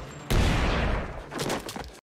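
Heavy volley of gunfire from a film soundtrack, shots running together into a continuous rattle, with a fresh loud burst about a third of a second in and a few separate shots near the end before it cuts off suddenly.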